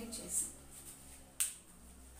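Faint voice sounds at the start, then a single sharp click about one and a half seconds in, over a low steady hum.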